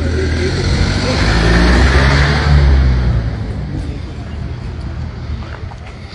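A motor vehicle driving past close by: its engine and tyre noise swell to a peak about two to three seconds in, then fade.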